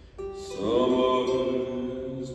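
Live acoustic band playing a slow song intro: after a brief lull, sustained notes come in, one sliding up into pitch about half a second in, over plucked strings.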